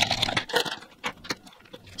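Light clicks and rustling as lipstick tubes and a small cardboard box are handled on a wooden desk, a few short taps in the first second and then quieter.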